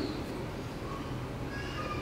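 Room tone: a steady low hum with faint hiss.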